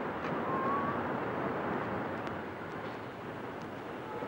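Steady background of street traffic: a continuous even rumble and hiss of passing vehicles.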